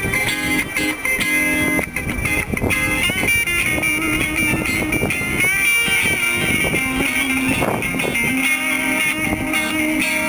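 Electric guitar played through looper and delay pedals into a small amp, layering a Latin-style groove with picked melody lines and sliding notes over a looped rhythm part.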